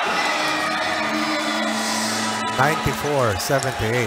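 Basketball arena sound: held music tones over crowd noise for the first half, then a man's voice talking from about two and a half seconds in.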